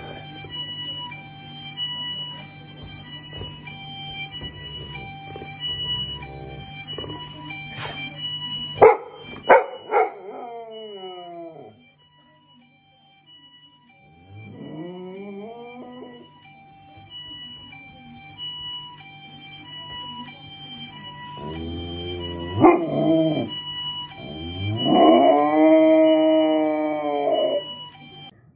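Golden retriever howling several times: a falling howl about ten seconds in, a rising one a few seconds later, and a long held howl near the end. There is background music throughout, and a few sharp knocks around the ninth second.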